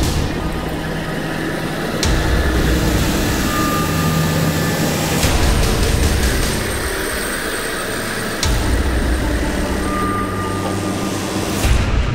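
Heavy equipment engines running steadily, a low diesel drone that changes abruptly every few seconds as the shots change.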